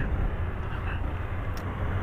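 Single-cylinder four-stroke engine of a 2011 Honda CG 125 Fan motorcycle running at low speed, heard as a steady, even sound mixed with wind noise on the microphone.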